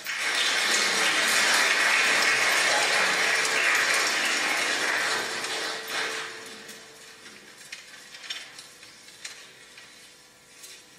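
Audience applauding, loud for about six seconds, then dying down into a few scattered claps.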